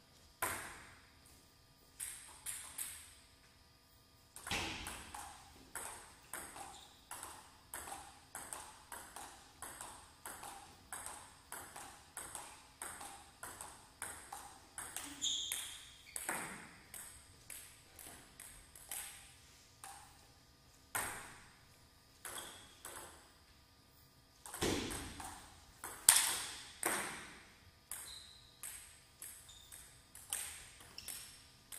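Table tennis rallies: the ball clicking off the paddles and the table about twice a second, in two long rallies separated by a short pause between points. The loudest hit comes about 26 seconds in.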